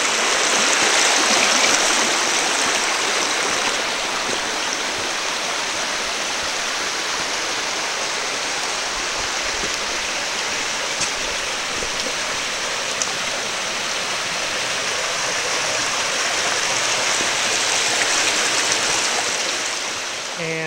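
Bandy Creek's shallow water running over rocks and small riffles: a steady sound of flowing water, a little louder in the first two seconds.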